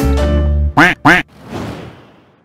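A jingle ending on a held chord, then two loud cartoon duck quacks in quick succession as a sound effect, followed by a brief swell of noise that fades away as a transition whoosh.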